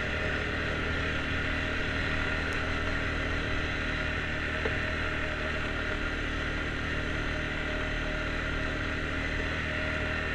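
Engine of an off-road vehicle running at a steady, even speed, with a constant rush of road and wind noise over it.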